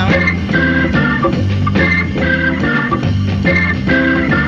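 Hammond organ playing a riff of short repeated chords over bass and drums in a late-1960s rock and jazz band studio recording, with no vocal line.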